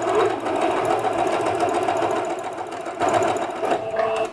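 Singer Patchwork electronic sewing machine stitching steadily through cotton fabric, its motor whine carrying a rapid, even run of needle strokes. This is a straight test seam sewn to check the balance between the upper thread tension and the bobbin case.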